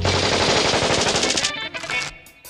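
Cartoon machine-gun rattle: a hand-cranked meat grinder fed corn cobs spraying corn kernels in rapid fire. It stops about a second and a half in, and a few music notes follow.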